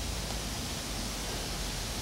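Steady, even background hiss with a low rumble underneath and no distinct event.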